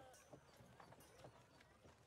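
Near silence: room tone with a few faint, scattered ticks.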